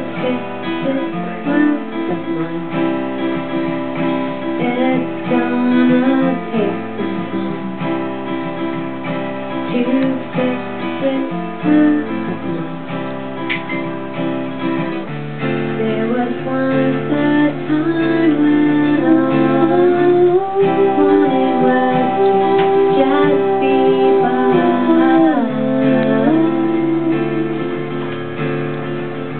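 Acoustic guitar strummed live, with a woman singing over it.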